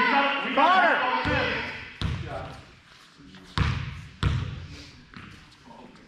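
A basketball being dribbled on a hardwood gym floor: about five bounces, unevenly spaced. Shouting or shoe squeaks come in the first second.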